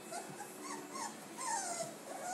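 Four-week-old Gordon Setter puppies whining: a few short high whines, then a longer falling whine a little past the middle.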